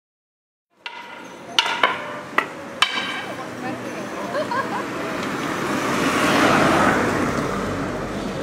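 Street ambience by a road: four sharp knocks in the first few seconds, then a car passing, loudest about six to seven seconds in, over people's voices talking.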